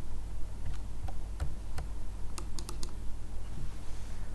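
Sharp clicks from operating a computer's mouse and keys: a few scattered clicks, then a quick run of about four about two and a half seconds in, over a steady low hum.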